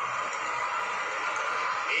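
Hindi cricket programme audio playing through a phone's speaker, in a short pause between the presenters' sentences, over a steady hiss.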